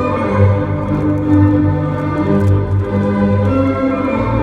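Recorded orchestral music, sustained string and organ-like chords over a line of bass notes, played loud over a banquet hall's sound system as dance music.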